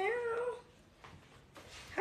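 A woman's whiny, drawn-out "now", wavering in pitch and trailing off about half a second in.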